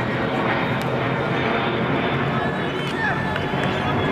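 Indistinct voices of rugby players calling and talking as the forwards bind and pack down for a scrum, over a steady outdoor rumble.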